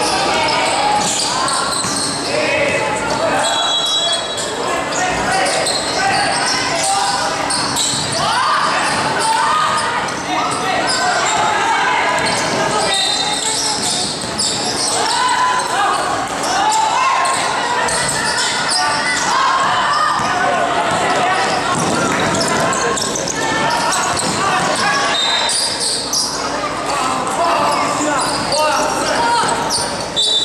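Basketball game in a gym hall: the ball bouncing on the court amid players' and spectators' shouting and chatter, echoing in the large room.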